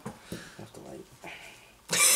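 Faint, indistinct speech with a few soft ticks.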